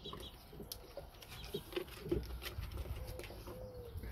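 Puppies mouthing and chewing at a wooden board, with scattered sharp clicks of teeth and claws. A few soft, low calls come about halfway through, and one drawn-out call comes near the end.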